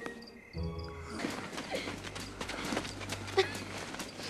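Quiet film soundtrack: a low music note about half a second in, then a dense, noisy night-time outdoor texture with scattered short rustles and chirps.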